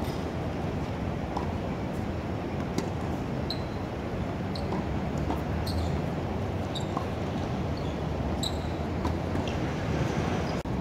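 Tennis rally on a hard court: scattered sharp pops of rackets striking the ball and the ball bouncing, some with short high squeaks, over a steady low city rumble.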